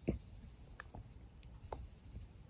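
Faint bird chattering: a few short, scattered chips over a faint high hiss.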